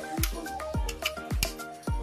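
Background music with a steady beat: a low drum thump about twice a second under sustained pitched notes.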